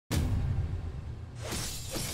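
Title-card sound effect: a sudden crash-like burst at the start that slowly dies away, then a whoosh about a second and a half in.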